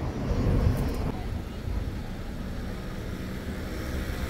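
Steady low rumble of a car driving slowly, engine and road noise heard from inside the cabin.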